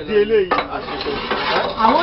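Gritty scraping and clattering of damp concrete mix being spread with a metal tool across the steel mould box of a QTJ4-40 concrete block machine, starting about half a second in.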